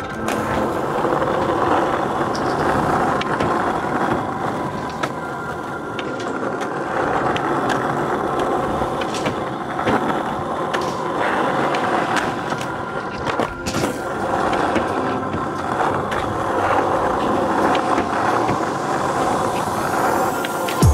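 Skateboard wheels rolling over a concrete skatepark surface in a steady grinding rumble, broken by a few sharp clacks of the board popping and landing.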